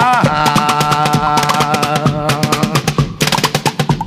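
Fast, driving hand percussion struck on a wooden chair, a dense run of rapid strokes, with a held note sounding over it for the first two seconds or so.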